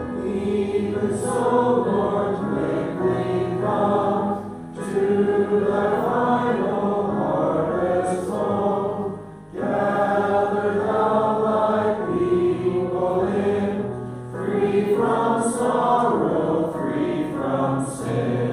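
A hymn sung by several voices together, with acoustic guitar and electric piano accompaniment. It moves in phrases of about five seconds, with short breaks between them.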